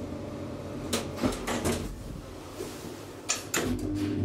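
Elevator door being handled: a cluster of sharp clicks and knocks about a second in and a couple more near the end, as of a door latching and closing.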